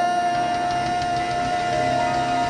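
A single long, high, steady held 'hey' cry, one unbroken note, over sustained church-band music.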